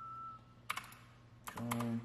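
Sharp clicks of a computer keyboard being used to draw in CAD: a single click, then a quick cluster of a few clicks about a second and a half in.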